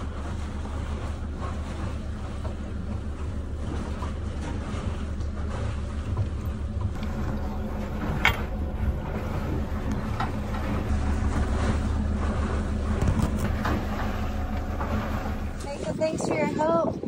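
Sailboat's inboard engine running steadily while motoring, a low drone, with a sharp click a little past halfway.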